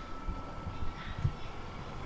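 Faint outdoor background noise: an uneven low rumble with a thin, steady high tone underneath.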